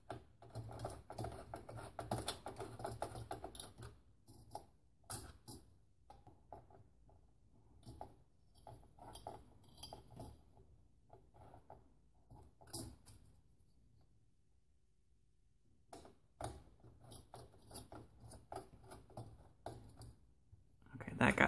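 Faint clicks and small metallic rattles of a screwdriver turning the spring-loaded mounting screws of a Noctua NH-D14 CPU cooler down into its mounting bracket. A dense run of clicks for the first few seconds, then scattered clicks with a short pause a little past the middle.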